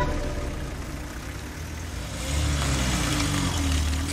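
Small cars driving off one after another, engines running at low speed. About halfway in, a hatchback passes close by, and its engine and tyre hiss on the wet tarmac grow louder.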